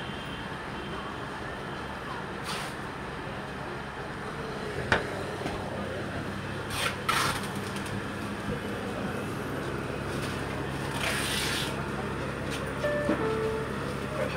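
Faint background music under a steady hall ambience, with a few short rustles of cloth brushing the phone's microphone. The longest rustle comes about eleven seconds in.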